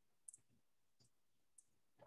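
Near silence: room tone with three faint, short clicks, the first one doubled.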